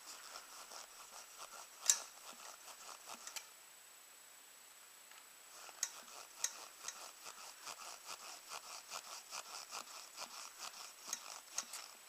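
Hand pump of an outboard lower-unit pressure tester being worked in two spells of quiet, short clicking strokes, with a pause of about two seconds between them. The pump is pressurising the gear case of a 1964 Johnson 18 outboard to about 12 PSI to test its seals.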